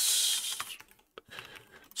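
A short breathy hiss, then a few faint computer keyboard key clicks about a second in, with one sharper click among them.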